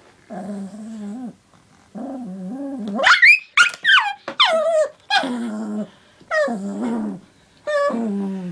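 Small dog growling defensively in a string of short bursts at a plastic water bottle held close to it, with a few loud high yelping whines about three seconds in.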